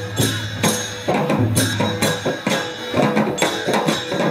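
Newar dhime barrel drums and clashing hand cymbals playing a fast, steady Lakhe dance rhythm, with deep drum beats and ringing cymbal strokes about twice a second.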